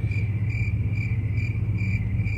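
Crickets chirping: a high, pulsing chirp repeating a little over twice a second, over a low steady hum.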